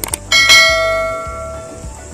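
Notification-bell sound effect of a subscribe-button animation: a couple of quick clicks, then a single bright bell ding that rings out and fades over about a second and a half.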